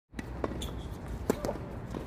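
Tennis ball being served and struck with rackets on a hard court, with the ball bouncing: a handful of sharp pops, the loudest a little past halfway.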